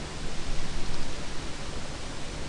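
Steady hiss of background noise from the recording, even across all pitches, with no other sound standing out.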